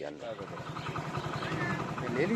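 Motorcycle engine running steadily while riding, with an even low pulse, after a man's voice ends at the very start.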